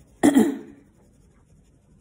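A woman clears her throat once, a short burst about a quarter of a second in.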